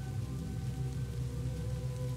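Steady rain falling, with a dark ambient music drone of long held notes underneath.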